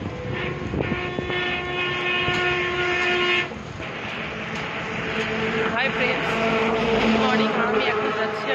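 A vehicle horn blown in one long steady blast of about three seconds that cuts off suddenly. After it comes a lower, steady tone over the last few seconds, with voices in the background.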